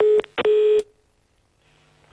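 Telephone line tone heard over a studio call-in line: two loud beeps, the second longer, then the line goes quiet as the next caller is put through.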